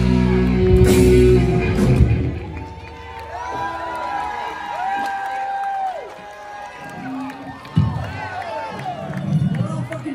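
A live hard rock band with electric guitars, bass and drums plays the loud final chord of a song, which cuts off about two seconds in. An audience then cheers and whoops, with a single thump about eight seconds in.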